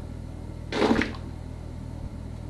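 A woman's short wordless vocal sound just under a second in, over a steady low electrical hum in a small tiled room.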